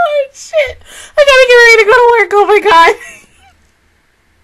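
A woman's high-pitched excited squealing without words: a few short squeals, then a longer wavering one that breaks off about three seconds in.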